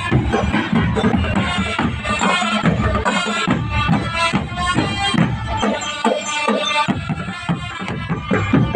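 Drum band music: drums beating a steady rhythm under a pitched melody.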